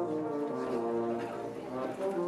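Brass band playing held chords, the notes shifting every half second or so, with a slight dip in loudness near the end.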